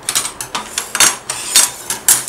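Red perforated metal chassis plates of a robot kit clattering against one another and the tabletop as they are handled, a quick irregular run of sharp clicks and rattles.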